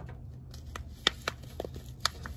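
Thin red plastic cup crackling in a string of sharp clicks as it is squeezed by hand to loosen the potting soil inside.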